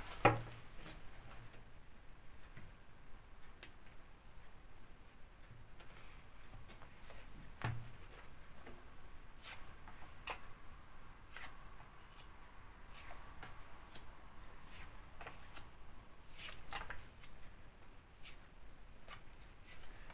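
Tarot cards being shuffled and dealt onto a cloth-covered table: faint, irregular soft clicks and slides of card against card.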